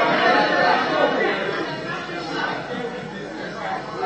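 Chatter of many voices in a large chamber, dying down over a few seconds.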